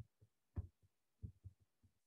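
Faint, dull computer keyboard keystrokes: about half a dozen soft, irregularly spaced taps as typed text is deleted with the backspace key.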